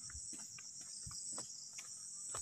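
Faint, steady, high-pitched trilling of insects, made of rapid even pulses.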